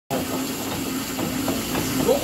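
Steady whirring hiss of several arm-crank cycle machines being spun hard in a gym, with faint voices underneath.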